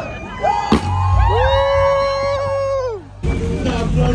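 A sharp start-line firework bang about a second in, followed by about two seconds of held, steady musical notes that bend down and cut off abruptly.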